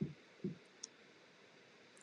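Two soft, brief low thumps about half a second apart, then a faint click, over quiet room hiss.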